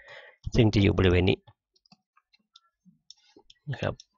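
A man's voice speaks briefly, then faint, scattered small clicks follow, the sound of a computer mouse clicking and scrolling through a document.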